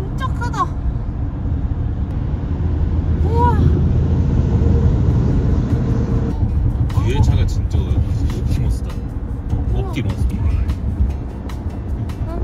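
Steady low road and engine rumble of a car driving on a highway among heavy trucks, with short voice exclamations that rise and fall every few seconds. About six seconds in, the noise turns brighter and hissier, with quick ticks.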